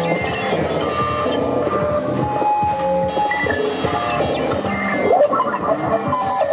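Live electronic noise music played from laptops, small mixers and a mini keyboard: dense, unbroken layers of held tones that jump to new pitches every half-second or so, over a rattling, clicking texture.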